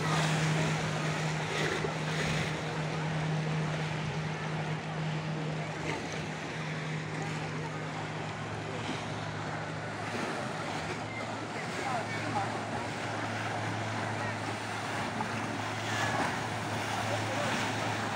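Motorboat engines running with a steady hum over the rushing wash of their wakes breaking on the water. About halfway through the hum drops to a lower pitch as a larger canal tour boat passes close.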